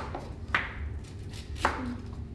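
Knife slicing through a raw fennel bulb onto a plastic cutting board: two crisp chops about a second apart.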